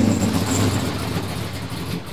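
Loud racing-car engine running at a steady pitch, slowly fading.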